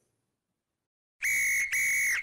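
Silence, then two short blasts of a referee's whistle about a second in, each about half a second long at a steady high pitch, with a brief gap between them.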